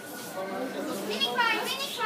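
Children's voices and background chatter of visitors, with one high-pitched child's call about one and a half seconds in.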